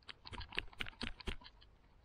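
A quick, irregular run of about a dozen light clicks and taps from a hand-held trekking pole being pressed and worked, fading out after about a second and a half.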